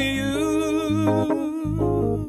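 A male voice singing a wordless, humming melody with wavering, bending pitch over sustained electric keyboard chords and bass notes.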